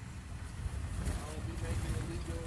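Low, steady road and engine rumble inside a moving vehicle's cabin.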